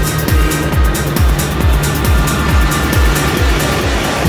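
Trance dance music: a steady four-on-the-floor kick drum at about two beats a second under held synth chords. A sung "love you" comes at the start.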